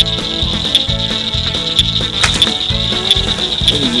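Steady high chorus of night insects by a pond, under background music with held bass notes and a light regular beat.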